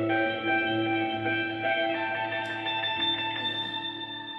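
Solo electric guitar playing a slow instrumental melody in picked notes and chords. From about three seconds in, a chord is held and rings out, slowly fading.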